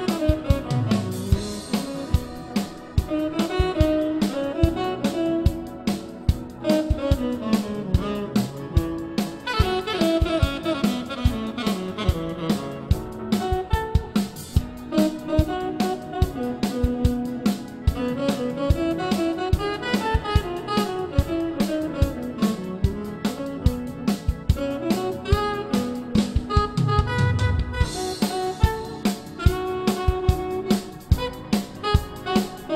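Bebop jazz instrumental: a saxophone line weaving up and down over a steady drum-kit beat, with guitar.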